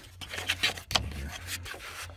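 Fingers rubbing and scraping on a plastic ignition coil and its connector, with a few small knocks and one sharp click about a second in.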